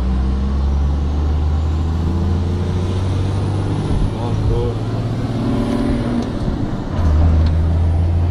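Engine and road noise heard from inside the cab of a moving vehicle: a steady low drone that gets louder about seven seconds in.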